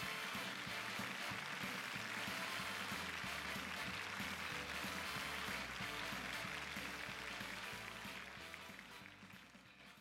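Sitcom closing theme music playing under the end credits, fading out over the last two seconds.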